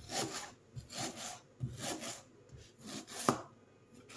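A large kitchen knife slicing through an onion on a wooden cutting board in four slow, drawn strokes a little under a second apart. The last stroke ends in a sharp knock of the blade on the board near the end.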